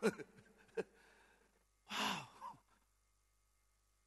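A man's short exclamation "wow" into a handheld microphone, then, about two seconds in, a breathy sigh with a falling voice.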